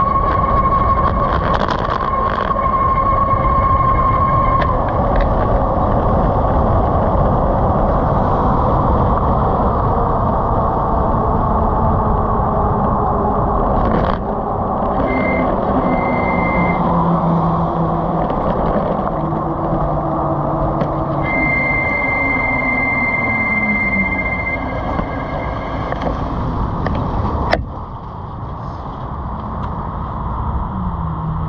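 Wind rush and road noise from a moving 1000-watt electric bike, with a steady high whine from its motor that comes and goes and a lower whine falling in pitch in the second half. Near the end a sharp click comes and the noise drops.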